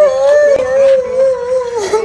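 A boy crying loudly in one long, wavering wail that breaks off near the end.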